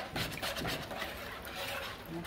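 Wire whisk beating a runny egg-and-milk custard mixture in a plastic bowl: quick, repeated scraping and sloshing strokes of the wires against the bowl.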